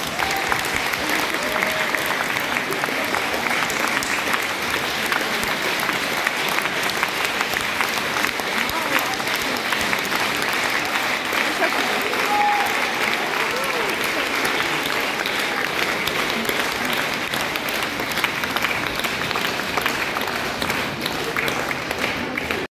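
Audience applauding, a steady, dense clapping throughout, with a few faint voices mixed in.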